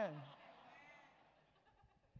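A man's drawn-out, wavering word ends about a quarter second in, then fades into a faint room murmur and near silence.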